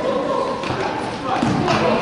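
People talking and calling out in a large hall, with a few thuds of a basketball bouncing on the floor, about two-thirds of a second and a second and a half in.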